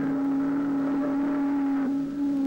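Ship's horn sounding one long, steady blast.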